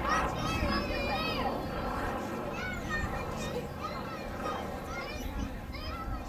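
High-pitched children's voices calling out and squealing, with a busy cluster in the first second and a half and more calls every second or so after, over a low steady noise.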